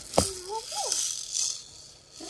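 Handling of a cloth embroidered patch: a sharp click shortly after the start, then a brief rustle about a second and a half in.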